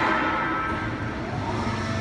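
Machinery running steadily with a humming whine, a lower hum joining near the end.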